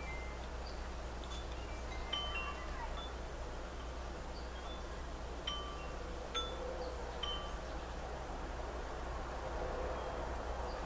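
Wind chimes ringing sparsely: scattered single clear notes that die away quickly, several over a few seconds, over a steady low hum.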